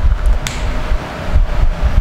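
Steady background noise with a low rumble and a faint steady hum, with a single click about half a second in.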